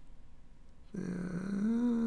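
Quiet room tone for about a second, then a man's drawn-out "yeah" with a slightly rising pitch.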